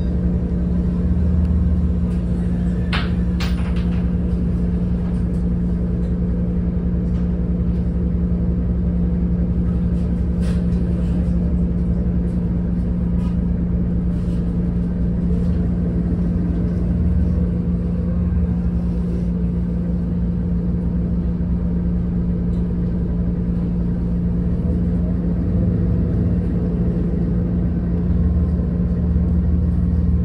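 Steady drone of a hybrid city bus's drivetrain heard from inside the cabin, with a constant low hum. A couple of brief rattles come about 3 and 10 seconds in.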